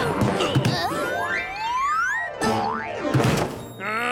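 Cartoon sound effects over background music: springy boings and several rising, slide-whistle-like glides in the middle, as wooden boxes are tossed about.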